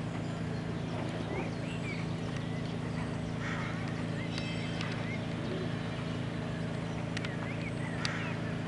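Faint hoofbeats of a horse cantering on an arena's sand footing under a steady low hum, with short high chirps now and then.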